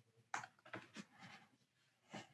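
Near silence: room tone with a few faint short clicks, the first and strongest about a third of a second in.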